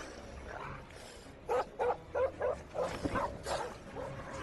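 Dobermanns barking: a quick series of about seven short barks, starting about a second and a half in.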